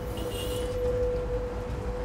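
A steady held musical note, a soundtrack drone, over the low rumble of street traffic, with a brief high shimmer near the start.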